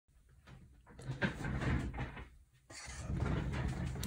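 Rustling handling noise with a light knock, in two stretches of a second or so with a brief pause between.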